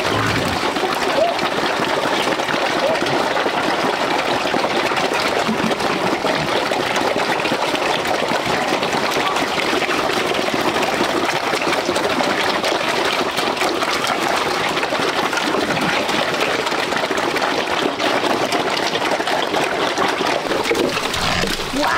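A pen of black pigs feeding at troughs on wet feed: a steady dense mix of grunting and wet chewing and slurping.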